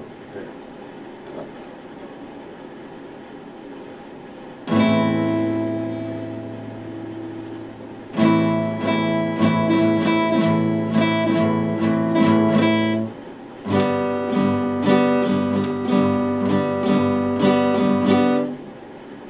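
Epiphone steel-string acoustic guitar being played. A quiet first few seconds, then one chord left ringing, then steady rhythmic strumming with a short break just past the middle.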